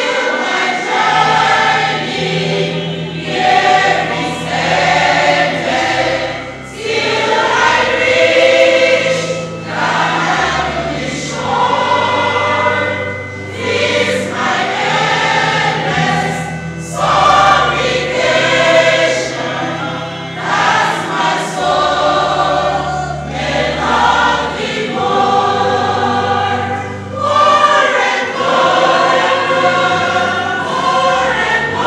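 Church choir singing a hymn in parts, in sustained phrases a few seconds long with short breaks between them.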